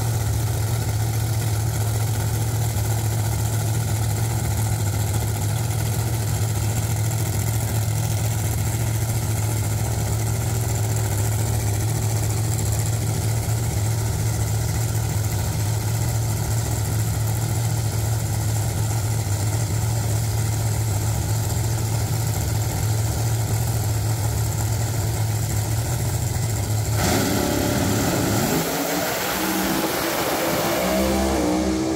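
Two Pro Mod drag cars' V8 engines idling loudly and steadily at the start line. About 27 seconds in they go to full throttle and launch, the pitch rising as they pull away.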